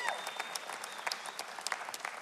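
Church congregation applauding, a dense patter of hand claps. A short vocal cheer trails off right at the start.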